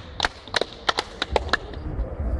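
Sparse, irregular hand claps from a few spectators, about four sharp claps a second, as the match ends.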